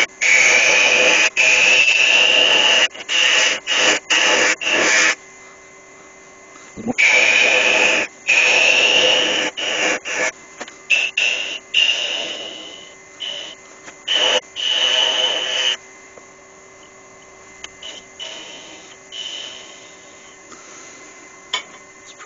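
Wood lathe turning tool cutting a small spinning spindle blank in a series of passes to take down its thickness. Each pass is a loud scraping hiss with a whine in it that rises in pitch as the pass goes on. The cuts come in a long run at the start, then in shorter strokes, and thin out near the end, leaving the lathe's faint hum.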